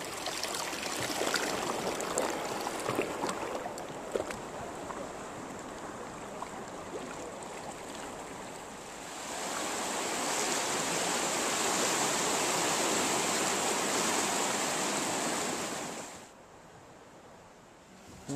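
Water lapping and sloshing around a kayak on open water, with a few small knocks, then, about nine seconds in, a louder steady wash of small waves running over lava rocks along the shore, which drops away suddenly near the end.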